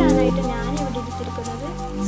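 Background music with steady held notes, over a light crackling of a thin plastic cover being handled.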